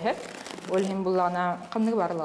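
Paper towel rustling as a sheet is handled for about the first half second, then a woman speaking.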